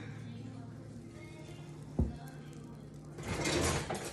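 A low steady hum, one thump about halfway through, then the scraping and clatter of a glass baking dish being set down and slid on a counter near the end.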